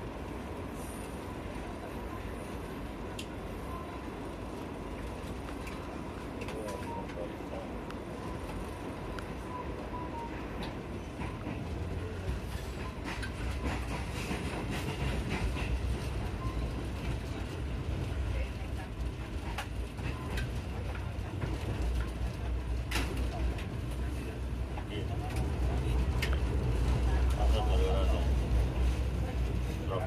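Malioboro Ekspres passenger train running on the rails, heard from on board: a steady rumble of the wheels with scattered sharp clacks. The low rumble builds from about halfway through and is loudest near the end.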